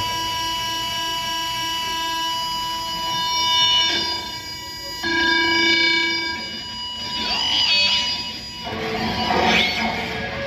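Live band playing a slow, droning passage: steady held tones, with electric guitar notes coming in about halfway and wavering, bending tones near the end.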